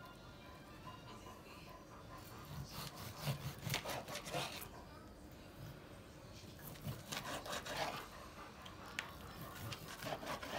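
A knife sawing through a rack of smoked pork spare ribs on a plastic cutting board: faint back-and-forth cutting strokes in two spells, a few seconds in and again past the middle.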